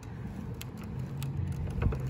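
Hard plastic wheels of a big-front-wheel toy tricycle rolling on a concrete sidewalk: a low rumble that slowly grows louder, with a few faint clicks.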